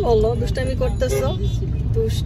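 Steady low rumble of a car heard from inside its cabin, with a child's high voice talking over it for about the first second and a half.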